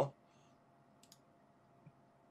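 A faint, sharp computer mouse click about a second in, with quiet room tone around it.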